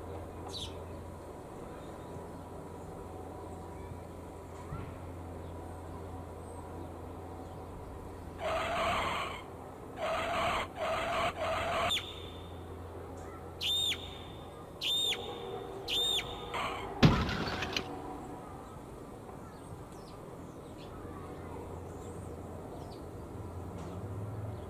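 House sparrows chirping over a steady low hum: a few faint cheeps, then a stretch of loud harsh chattering calls, followed by four clear, evenly spaced cheeps about a second apart and a single sharp snap.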